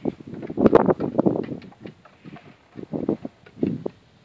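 Footsteps on the ground in irregular bursts, densest in the first second and a half, with two shorter bursts of steps near the end.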